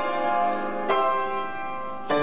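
Slow piano music: sustained chords, a new chord struck about a second in and left to ring and fade.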